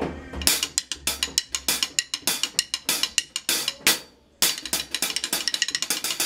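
A drumstick playing a quick run of strokes on a pair of hi-hat cymbals. There is a brief pause about four seconds in, and then the strokes come closer together.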